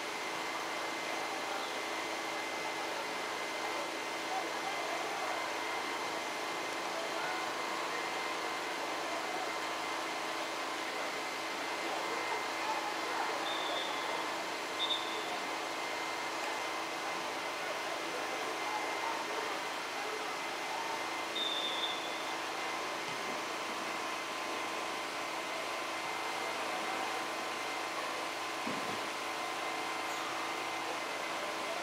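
Steady background noise with indistinct voices murmuring, and a few brief high-pitched tones about halfway through.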